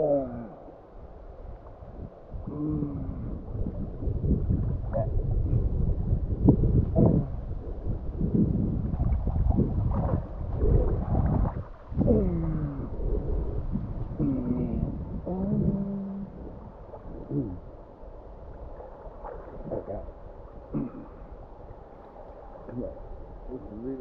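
Muffled river water sloshing and gurgling around a camera held half-submerged at the surface, with low rumbling and short rising and falling gurgles, loudest in the middle.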